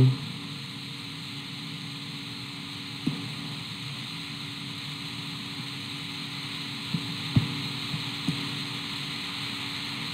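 Steady hiss and electrical hum of the recording's background, broken by a few faint clicks about three seconds in and again near the end.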